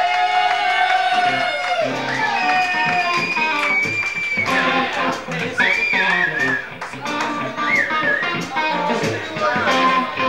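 Live blues band playing: a guitar lead with long, bending notes over bass and drums.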